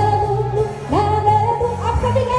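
Live music: a woman singing, her voice sliding up into a long held note twice, over a steady low accompaniment.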